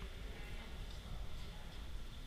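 Faint room ambience in a large hall: a steady low rumble with no distinct events.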